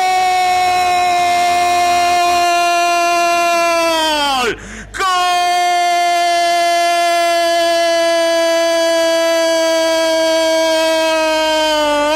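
Radio football commentator's long, drawn-out goal shout, a "goool" held on one high note for about four seconds that sags in pitch as it ends, then, after a quick breath, held again on the same note for the rest.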